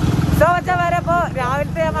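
Motorcycle engine running with road and wind noise as it rides along, a steady low hum under a person's voice talking from about half a second in.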